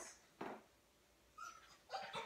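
A dog whining faintly: a brief sound about half a second in, then a short high whine about one and a half seconds in.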